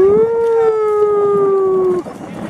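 A long, loud howl that glides up, then holds for about two seconds while its pitch slowly sinks, and breaks off near the end.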